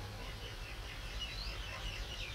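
Birds chirping: a few short, rising high calls in the second half, over a steady low background rumble.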